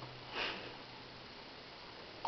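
A single short sniff about half a second in, in a quiet room with a faint low hum.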